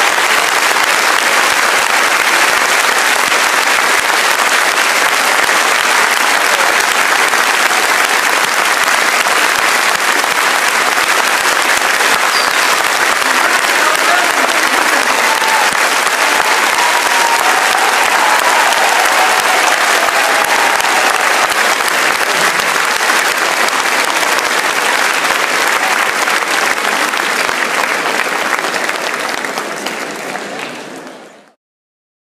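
A large concert-hall audience applauding, a dense, steady wall of clapping that eases slightly near the end.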